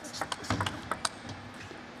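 Table tennis rally: the plastic ball clicking sharply off rackets and the table in quick succession, about eight hits, stopping about a second in as the point ends.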